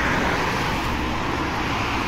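Steady road traffic noise: passing cars, with an even hiss of tyres on a wet road surface.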